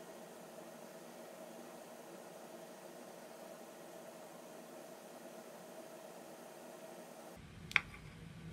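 Faint steady hiss of room tone with a faint hum, and a single sharp click near the end.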